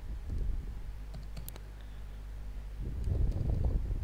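Computer keyboard and mouse clicks as results are typed into a spreadsheet: a few sharp clicks, with dull low knocks on the desk, loudest near the end.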